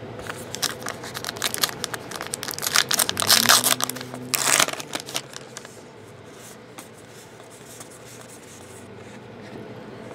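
Foil wrapper of a baseball card pack crinkling and tearing open, loudest a little past the middle, then a softer rustle of cards being handled.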